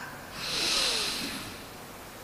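A man drawing one breath in close to the microphone: a hissing intake lasting about a second.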